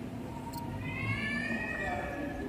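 A baby's cry: one long, high wail starting about a second in, its pitch rising slightly and then falling.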